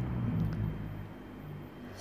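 A low engine-like rumble that fades over the first second, leaving a faint steady low hum.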